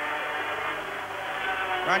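500cc two-stroke Grand Prix racing motorcycles running past, a steady engine note held at an even pitch.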